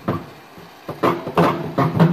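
A man's voice speaking briefly, starting about a second in, after a quieter pause with only faint background.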